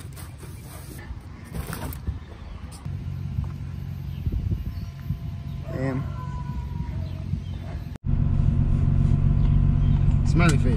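Turbocharged BMW E30's engine heard from outside as the car drives along. It cuts off suddenly, and the engine comes back louder, idling, as heard from inside the cabin.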